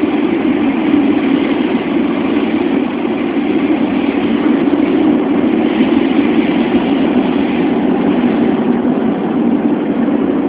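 Steady rumble and rushing roar inside an ML90 metro car running through a tunnel: wheels on the rails and running noise, even throughout with no sharp knocks.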